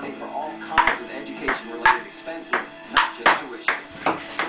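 Table tennis ball being played in a fast rally, clicking sharply off the paddles and the table about two or three times a second from about a second in.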